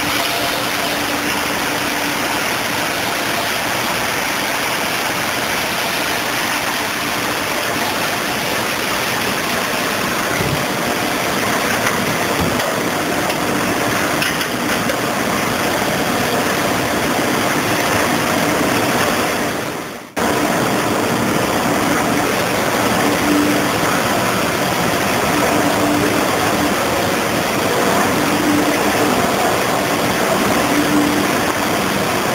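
Simco SEG-1000 spring end grinding machine running: a steady, loud rush of grinding and coolant spray with a faint hum. About two-thirds of the way through, the sound fades briefly and cuts back in.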